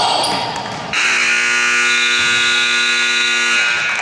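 Gym scoreboard horn sounding the end of the first quarter: one steady blare of about three seconds that starts suddenly about a second in.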